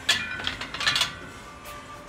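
Loaded steel barbell being set back onto the hooks of a squat rack: a sharp metallic clank with ringing, then a second rattle of clanks from the bar and plates just under a second later.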